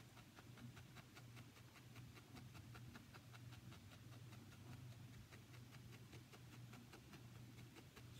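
Faint, quick pokes of a felting needle stabbing into wool roving over a foam pad, about four or five a second, over a steady low hum.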